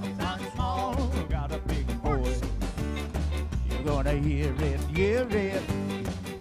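Live acoustic ska band playing: upright bass walking steady low notes under acoustic guitar, congas, fiddle and electric guitar, with a wavering lead melody on top.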